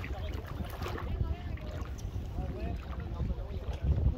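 Wind rumbling on the microphone beside open water, with faint distant voices.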